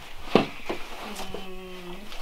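Fabric caps and hats being rummaged through and handled on a table, with one short sharp sound about a third of a second in and a steady low hum held through the last second.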